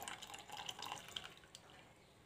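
Lemon juice poured from a small bowl into a pot of boiled milk, a faint trickle and splash that dies away after about a second and a half: the acid being added to curdle the milk for paneer.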